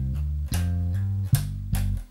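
Four-string electric bass played slap style, slowly: a few low notes with sharp thumb-slap attacks, some notes sliding to a new pitch without a fresh attack, ending on a G.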